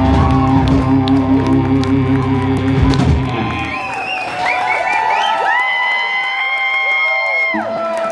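Live band music: the band plays a held chord over bass and drums, and the bass and drums stop about three and a half seconds in. Crowd cheering and whoops follow over lingering high held notes, and the bass comes back in just before the end.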